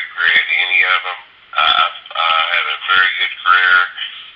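A man's voice talking over a telephone line, sounding thin and narrow like a phone call.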